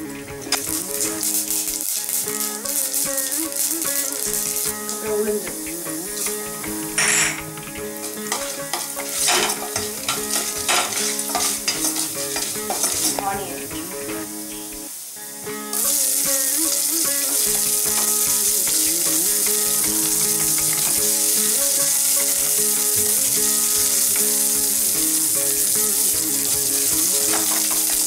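Mustard seeds crackling and popping in hot oil in a pressure cooker, irregular sharp pops through the first half. About halfway through a steady, louder sizzle sets in as the dal and seeds fry and are stirred.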